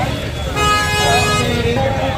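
A vehicle horn honking once, one steady note held for about a second, starting about half a second in, over the rumble of street traffic and crowd voices.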